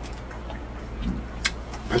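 Steady low background hum with a single sharp click about one and a half seconds in; a voice starts right at the end.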